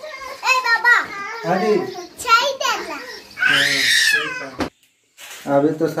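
A young girl's high voice talking, with one longer, higher call about three and a half seconds in. The sound cuts out briefly near the end, and then a man starts speaking.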